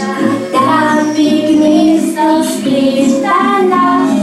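Children singing a song together.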